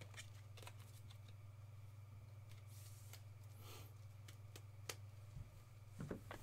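Near silence over a steady low hum, with a few faint clicks and a soft rustle about three seconds in: trading cards and packs being handled.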